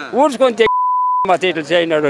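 A steady high-pitched beep tone, about half a second long, drops in partway through a man's speech, with the speech silenced beneath it: a censor bleep masking a word.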